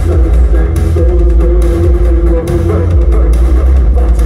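Live darkwave band music over a club PA, recorded from the crowd: a heavy synth bass and beat dominate, with a held melody line from synths and electric guitar above it.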